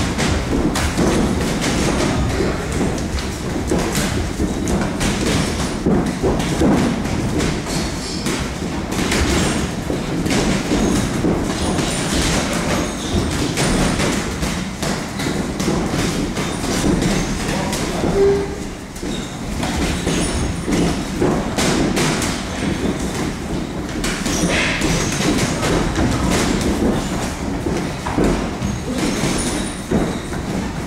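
Boxing gloves thudding in irregular runs of punches on pads and bodies, with shuffling footwork on the ring canvas, over a steady low rumble of gym noise.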